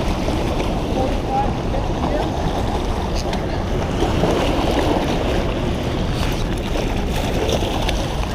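Steady rush of water pouring through a dam spillway and churning against shoreline boulders, mixed with wind buffeting the microphone.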